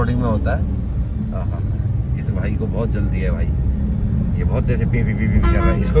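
Steady low engine and road rumble heard from inside a car's cabin in slow city traffic, with faint voices over it and a brief steady tone near the end.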